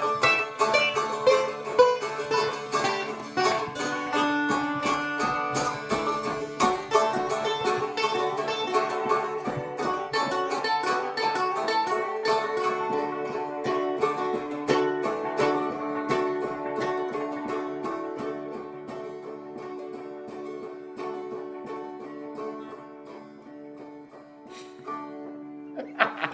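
Two strumsticks, small three-string fretted stick dulcimers, strummed together in a loose jam, with steady droning notes under the strummed melody. The playing grows gradually quieter and sparser toward the end.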